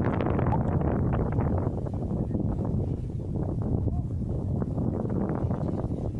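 Wind buffeting the microphone in a steady low rumble, with faint voices underneath.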